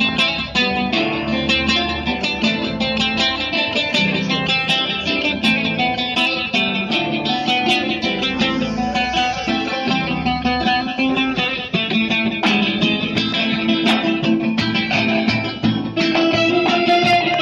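Bağlama (long-necked Turkish lute) and acoustic guitar playing an instrumental passage of a Turkish folk-pop song, with quick plucked and strummed notes and no singing.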